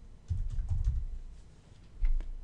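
A few keystrokes on a computer keyboard, beginning with a low thump about a third of a second in and fading out past the middle.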